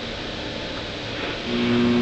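The loudspeaker of a vintage Columaire radio, hissing steadily with static in a pause of a talk broadcast. A short steady tone sounds near the end.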